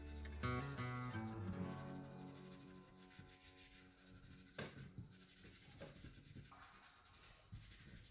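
A soft pastel stick rubbing across velour pastel paper in faint, scratchy strokes. The last chord of background music fades out over the first few seconds.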